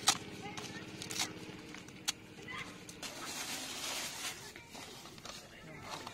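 Fresh lemon leaves rustling and crackling as they are torn and crushed by hand into a plastic bucket. A sharp click comes just after the start, with fainter ticks about one and two seconds in.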